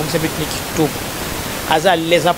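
Speech with a steady background hiss under it, with a short pause in the talk a little after halfway.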